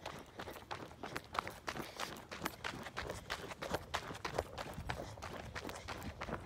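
Footsteps on a paved path, about two steps a second, with the handheld phone jostling as it is carried.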